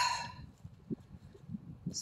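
A woman's breathy sigh tailing off, followed by faint, scattered low knocks and rustles.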